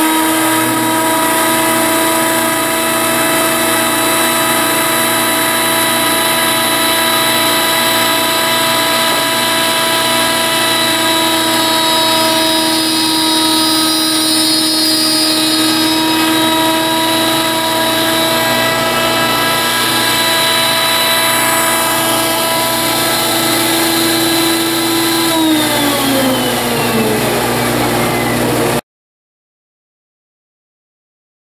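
Table-mounted router running at a steady high whine as the box corner is fed past the bit in a tenon jig to cut a key slot. About 25 seconds in it is switched off and winds down in pitch before the sound cuts off suddenly.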